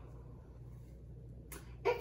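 Quiet room tone with a low steady hum. A brief sharp sound comes about three-quarters of the way through, and a woman's voice starts just before the end.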